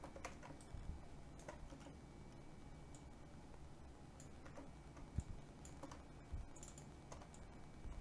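Faint, scattered clicks of a computer keyboard and mouse being used at a desk, with a couple of slightly louder clicks about five and six and a half seconds in.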